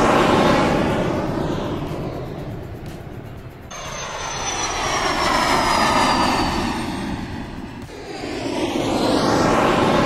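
Jet airplane flyby sound effect played three times. Each pass swells up and fades away with the sweeping whoosh of a jet going overhead, and the middle pass carries a high whine that slowly falls in pitch.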